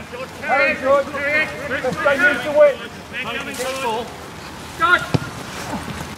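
Men's voices shouting and calling across a football pitch during play, with a single sharp knock about five seconds in.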